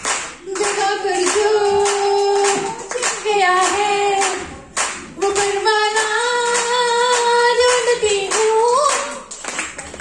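A woman singing a Hindi song into a microphone over a PA system, holding long wavering notes, while hands clap along in a steady rhythm.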